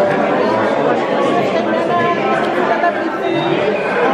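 Many people talking at once in a large hall: a steady, overlapping crowd chatter with no single voice standing out.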